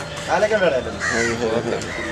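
Crows cawing, mixed with people's voices.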